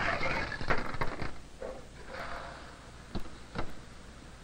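Light knocks and clicks of glass lab apparatus being handled as a pressure-gauge thermometer bulb is moved between cold-bath beakers, with brief hissy rustles and two sharp clicks near the end.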